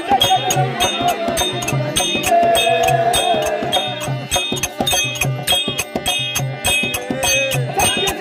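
Therukoothu (Tamil street-theatre) accompaniment music: an even drum and percussion beat about twice a second, with a wavering melodic line bending in pitch above it.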